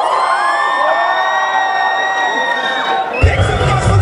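Audience cheering, whooping and shouting. About three seconds in, dance music with a heavy bass beat starts suddenly.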